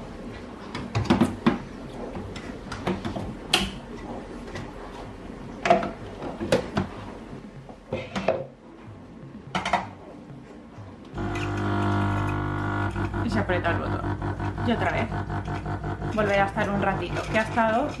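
Smeg espresso machine being handled, with a few clicks and knocks as a plastic jug is set under its outlets, then about eleven seconds in its pump starts and runs with a steady buzzing hum, pushing clean rinse water through the machine after descaling.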